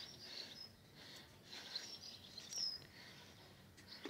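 Faint outdoor ambience with small birds chirping now and then in the distance, one clearer falling whistle a little past halfway, and a soft rustle of crumbly soil being firmed by hand around a seedling.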